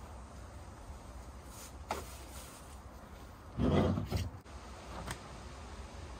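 A molded plastic ATV fender being handled and wiped with a cloth: a short scrape of plastic a little past the middle, the loudest sound here, followed by a couple of light clicks, over a steady low rumble.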